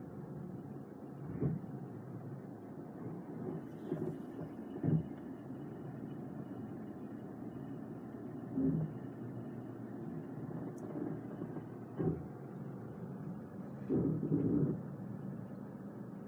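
Low, steady cabin hum of a Mercedes-Benz E-Class creeping backwards as its automatic park assist steers it into a parking space, with a few short soft knocks. A faint, thin high tone holds steady from about four seconds in.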